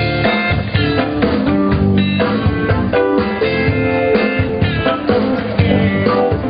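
Live amplified band playing an instrumental passage: electric guitars picking melodic lines over drum kit and keyboard.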